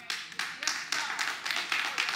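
A congregation applauding: a few claps at first, quickly filling out into dense clapping from many hands.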